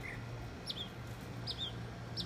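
A small bird chirping: two short, sharp down-slurred chirps about a second apart, over a steady low hum.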